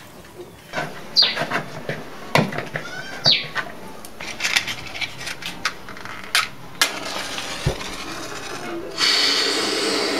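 Hands working sweet-bread dough in a plastic bowl: scattered soft knocks and clicks, with a couple of short falling chirps about one and three seconds in. Near the end a steady hiss starts as dough goes into hot oil on a gas burner and begins to fry.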